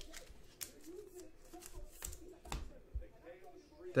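Trading cards being handled and set down on a table: a few light clicks and taps, the sharpest about two and a half seconds in.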